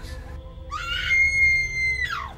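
A shrill, high-pitched sound rises and then holds one piercing note for about a second over background music, before falling away at the end.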